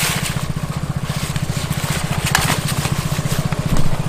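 A small engine idling close by with an even, rapid throb, and a few short gritty crunches as bait powder is worked in a bowl.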